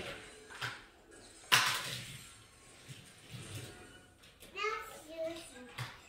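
A small child's voice sounding briefly in short calls near the end. Before it, about one and a half seconds in, there is a sudden loud noisy burst that fades over most of a second.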